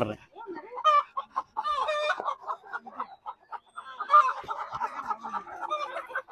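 Chickens clucking in a quick, uneven run of short calls, with a louder call about four seconds in.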